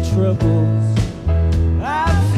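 A live band playing a country-style tune on lap steel guitar, piano, electric bass and drums, with steady drum hits under a bass line that moves between notes. A rising pitch glide comes near the end.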